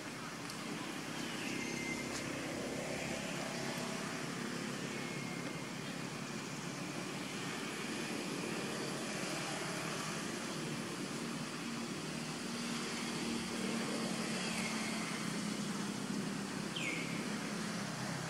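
Steady low drone of distant engine traffic, swelling slightly past the middle, with a few short, high, falling chirps.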